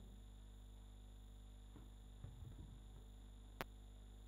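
Near silence with a steady electrical hum, faint rustling, and one sharp click near the end as a handheld microphone is passed from one speaker to another.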